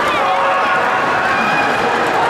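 Arena crowd: many voices talking and calling out at once in a steady, loud din.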